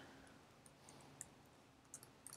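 A few faint clicks of computer keyboard keys being typed, against near silence.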